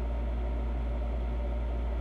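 Steady low hum with an even hiss underneath, unchanging throughout.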